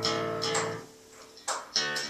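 A guitar being strummed. A chord rings and fades out within the first second, then a fresh strum comes in about a second and a half in.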